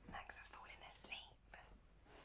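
A woman whispering faintly.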